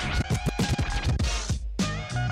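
DJ scratching a vinyl record on a turntable over a hip-hop track: a rapid run of short back-and-forth strokes cut into the music.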